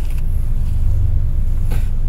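Steady low rumble of a car's running engine, heard from inside the cabin.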